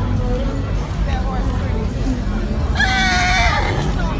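A horse whinnies once, about three seconds in: a high call with a wavering pitch, lasting under a second.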